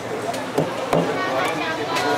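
A cleaver chopping through a fish on a cutting board: a few sharp knocks, the loudest about a second in.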